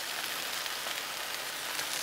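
Beef smash burger patties frying on a hot flat-top griddle, a steady sizzle.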